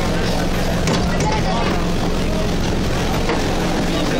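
Mumbai suburban electric local train pulling into a station: a steady rumble with a constant low hum, mixed with the chatter of a crowd of passengers.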